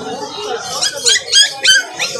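A young puppy whimpering: three short, high-pitched cries about a second in, each rising in pitch, over background chatter.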